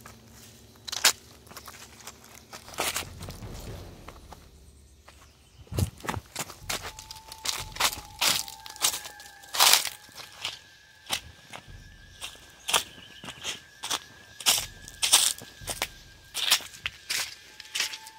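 Footsteps in slide sandals on dry leaves, grass and dirt, each step a short crunch, irregular and sparse at first, then coming closer together about six seconds in.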